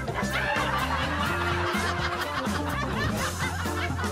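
Background music with a steady bass line, overlaid with a laugh track of many people laughing and chuckling.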